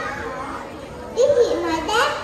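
Young children's voices talking and calling out in high-pitched snatches, louder from about a second in.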